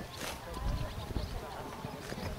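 Hoofbeats of a grey horse moving over grass turf, heard as low thuds, with a brief hiss just after the start.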